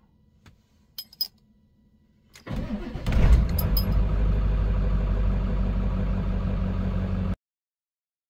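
Ford 7.3 Power Stroke V8 turbo-diesel cold-starting: a few faint clicks, then a brief crank about two and a half seconds in. It catches within about half a second and settles into a steady idle, which ends abruptly near the end.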